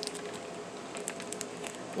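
Faint scattered clicks and rustles of small items and packaging being handled, over a faint steady hum.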